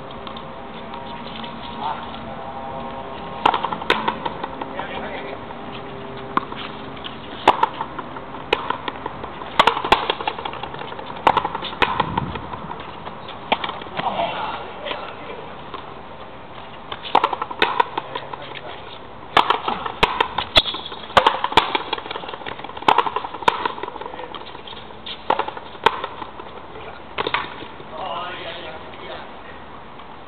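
Frontenis rally: a sharp crack each time a racket strikes the Oxone rubber ball or the ball hits the front wall, often in close pairs, at irregular intervals.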